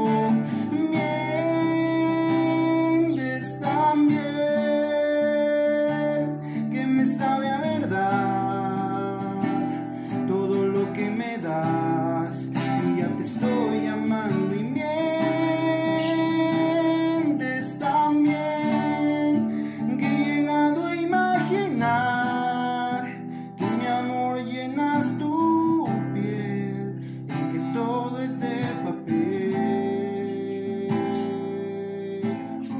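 A man singing a slow ballad, holding long notes, to his own strummed acoustic guitar.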